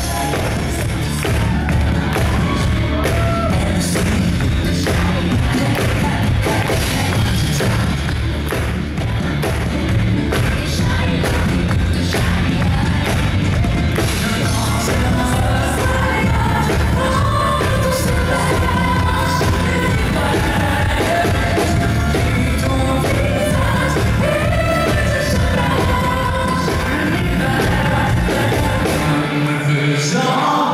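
Amplified live pop music: a band with heavy bass and drums playing loud and steady, with a male singer's voice over it, clearest in the second half.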